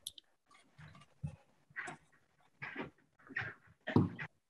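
A dog giving a string of short yelps or barks, about six in a few seconds, at moderate level.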